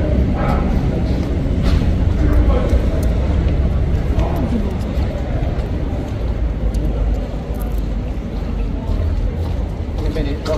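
Indistinct voices of people talking in the background over a steady low rumble.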